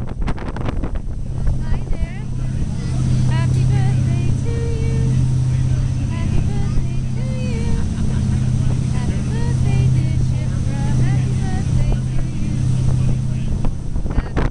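Steady low drone of a catamaran ferry's engines, heard from inside the passenger cabin, with faint voices over it. Wind buffets the microphone near the start.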